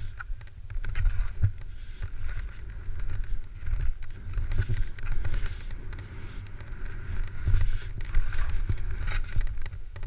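Wind buffeting a GoPro's microphone during a ski descent, a gusty low rumble that rises and falls, with the hiss of skis sliding through snow.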